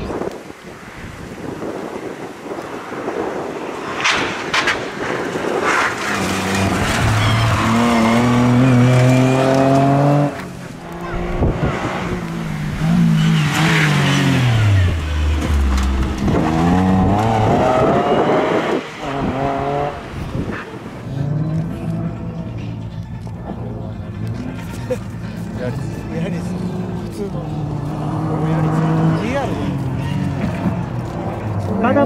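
Toyota Yaris front-wheel-drive rally car driven hard on a special stage, its engine note climbing and dropping repeatedly with gear changes and lifts. Near the middle the note falls away in one long slide as the car slows.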